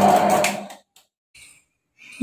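Electric stone wet grinder running with a steady hum as it grinds soaked rice and urad dal into batter, fading out within the first second; near silence follows.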